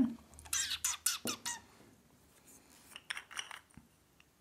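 Plastic scraper card scraping stamping polish across a metal nail-stamping plate, squeaking in a few short strokes about half a second in and again about three seconds in.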